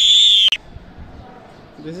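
A single loud, shrill whistled animal call, held at one high pitch and cutting off abruptly about half a second in.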